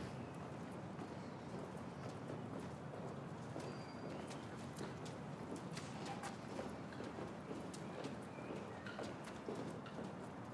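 Footsteps of two people walking on a hard floor, heard as an irregular run of faint clicks over a quiet room background.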